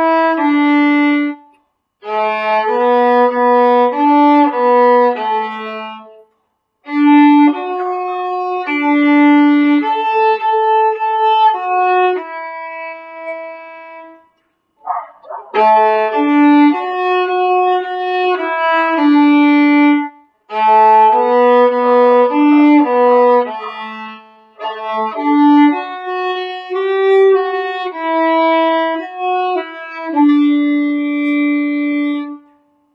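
Solo violin bowed through a simple beginner exercise melody of quavers and longer held notes, in short phrases separated by brief breaks, with a longer pause about halfway through.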